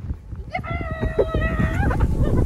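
A person's high voice holds one wavering note for about a second and a half, bending up at the end. Under it, footsteps crunch through deep snow, with wind rumbling on the microphone.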